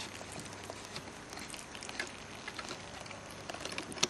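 Faint patter of small scattered ticks and drips from the wet, packed PVC briquette mold as it is handled and set into the wooden press.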